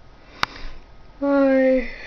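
A young woman's sniff and a held hummed "mmm" filler about half a second long, falling slightly at the end, with a sharp click shortly before and a breathy sniff after.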